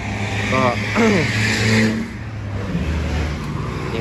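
A motorcycle engine idling steadily, with a man coughing twice near the start and a brief rush of noise between about one and two seconds in.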